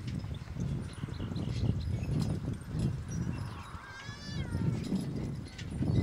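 Percheron draft horse team pulling a forecart over grass: hoofbeats and cart and harness rattle over a steady low rumble, with one short high call that rises and falls about four seconds in.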